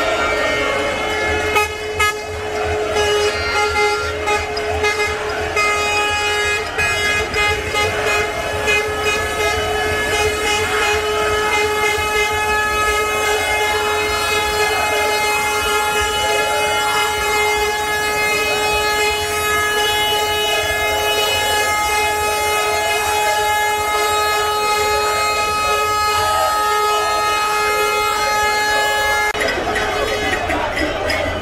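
A vehicle horn held down in one long unbroken blast, cutting off suddenly about half a second before the end, over a low engine rumble.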